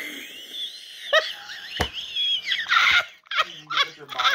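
A woman laughing helplessly: high-pitched, wheezing, squealing laughter in short breathless bursts, with a single sharp click just before the middle.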